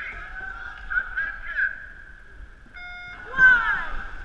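Race start horn gives one short, steady blast about three seconds in, the signal to go; it is followed at once by loud shouting from the dragon boat crew as they start to paddle. Voices call before the horn.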